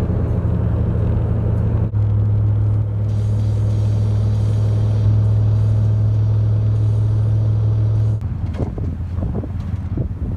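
Steady low drone of a car's engine and road noise heard from inside the moving car's cabin, changing abruptly about two seconds in. About eight seconds in it gives way to a quieter, more uneven rumble.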